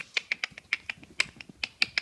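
Weimaraner puppies' toenails clicking on a hard floor as they scamper and play, a rapid, irregular run of sharp clicks, several a second.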